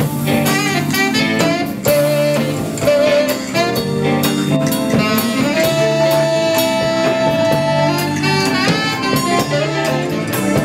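Live jazz band playing, with a saxophone carrying the melody over drum kit and guitar; a long note is held for a couple of seconds in the middle.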